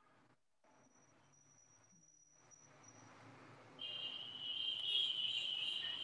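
Near silence at first, then faint background noise and, from about four seconds in, a steady high-pitched trill like an insect chirring.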